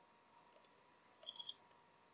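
Faint clicks of a computer mouse: a quick pair about half a second in, then a short run of several clicks around a second and a half in.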